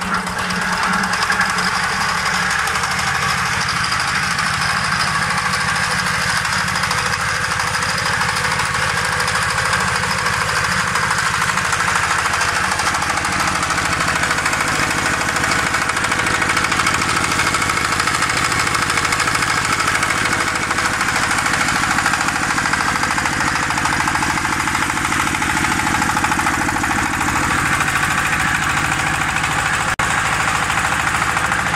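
Small single-cylinder Changzhou diesel engine running steadily, louder from about a second in, belt-driving a concrete pan mixer. A new steady tone joins about thirteen seconds in.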